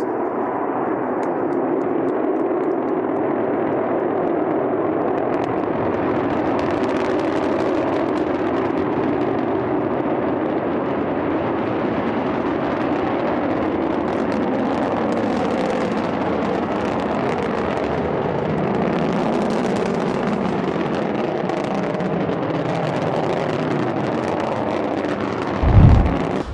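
Chinese Long March rocket engines firing at liftoff and during the climb: a steady, unbroken rumble that grows hissier after the first few seconds. A louder, sudden sound cuts in right at the very end.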